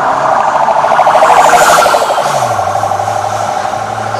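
Police vehicle siren with a rapidly pulsing tone that grows louder, peaks, then fades from about two seconds in as the vehicle passes. A vehicle engine passes close by, its pitch dropping about two seconds in.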